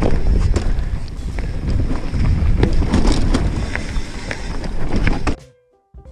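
1999 Specialized Hardrock steel mountain bike ridden fast over a rough dirt trail: heavy wind buffeting on the body-mounted microphone, tyre rumble, and many sharp rattling knocks as it hits bumps. The sound cuts off suddenly near the end.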